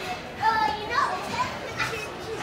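Young children's high-pitched voices calling and squealing while playing, loudest about half a second and a second in.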